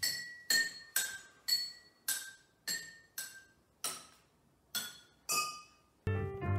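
Water-filled drinking glasses struck one at a time with a spoon: about ten ringing notes at different pitches, roughly two a second, picking out a simple tune.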